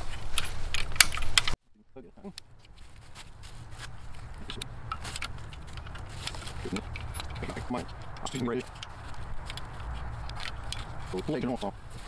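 A hand lever winch being worked to let off tension on a heavily loaded rope: sharp metallic ratchet clicks and rattling hardware. The sound cuts off suddenly about a second and a half in, and lighter scattered clicks follow.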